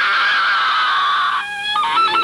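A woman's shrill, sustained scream from an old horror film soundtrack, cutting off about a second and a half in, followed by a few short notes of dramatic film music.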